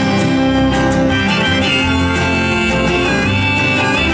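Live acoustic folk music in an instrumental break: a strummed acoustic guitar under a high, sustained melody line that wavers in pitch near the end.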